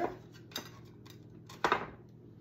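Light knocks of a sunflower sign being set into a gift basket against a plate: a faint tap about half a second in and a louder, sharper knock a little before the end.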